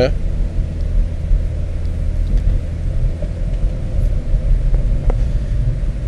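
A steady low rumble with a constant hum, and a faint click about five seconds in.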